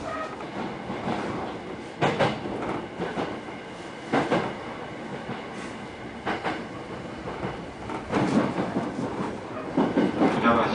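Rolling noise of a train heard from inside the passenger car: a steady rumble with a loud clickety-clack as the wheels pass rail joints, about every two seconds.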